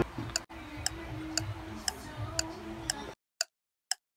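Clock-ticking sound effect, two ticks a second, laid over the footage. It starts over faint room sound, which cuts out a little after three seconds, leaving the ticks alone.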